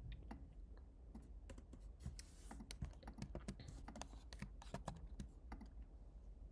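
Faint typing on a computer keyboard: quick, irregular keystroke clicks.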